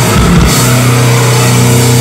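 Metalcore band playing live at full volume. About half a second in, the drum hits stop and a low, distorted guitar chord is held ringing.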